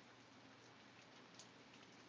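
Faint steady rain, close to silence, with a few faint drop ticks.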